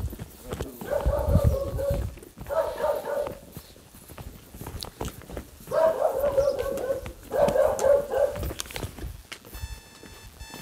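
An animal calling four times, each call a drawn-out cry of about a second held at a steady pitch.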